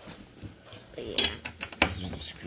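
Small metal clicks and clinks of screws and a hand screwdriver on a metal TV mount plate as a screw is driven into the back of the TV. A few sharp ticks, the loudest about a second in and again near the end.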